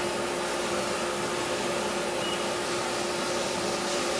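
Steady machine-shop hum with a constant low tone, and one short high beep from the ProtoTrak CNC control's keypad about two seconds in as a key is pressed.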